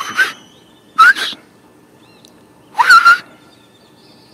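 Three short kissing squeaks made with the lips to call a cat, each a hissy smack with a brief rising squeak, the last the longest. Small birds chirp faintly behind.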